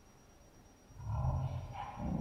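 A person drinking water from a glass, with a low throaty sound of swallowing starting about a second in.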